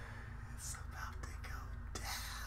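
A man's breathy, whispered excited exclamations: airy hisses and breaths starting about half a second in, over a low steady room hum.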